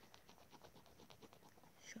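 Faint, rapid ticking of a stylus scrubbing back and forth on a tablet screen, about ten light taps a second, as handwritten notes are erased.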